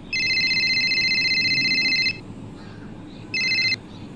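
Mobile phone ringing with a trilling electronic ringtone: one ring of about two seconds, then a second ring that breaks off after half a second as the call is answered.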